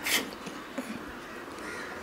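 A bird calling faintly in the background during a pause in the reading, over a low steady room background. A brief hiss comes just after the start.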